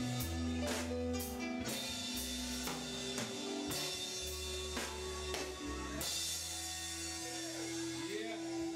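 Live rock band with drum kit, bass guitar and electric guitar, playing with a steady beat and sustained bass notes. About six seconds in the drums drop out and a single held note rings on.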